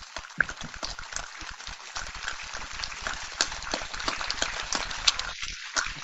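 Audience applauding: a dense patter of many hands clapping that swells gradually and stops suddenly near the end.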